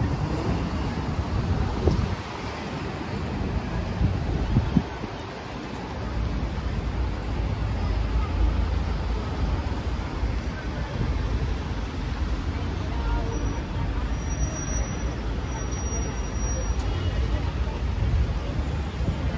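Busy city street ambience: road traffic running steadily with a deep rumble, and passers-by talking in the background.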